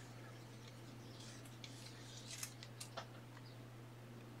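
Faint rustling and a few light clicks of trading cards and plastic card sleeves being handled, over a steady low hum.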